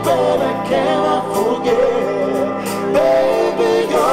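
A man singing lead live into a microphone in a slow R&B cover, his voice gliding between held notes over a steady low backing note.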